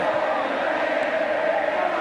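Football stadium crowd chanting, a steady mass of many voices singing together.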